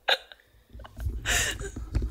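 A short, breathy burst of laughter about a second in, over a low rumble, with a faint click just before.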